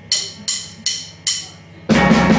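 Drummer's count-in: four clicks of drumsticks struck together, evenly spaced about 0.4 s apart, then the full band with drum kit and electric guitars comes in near the end.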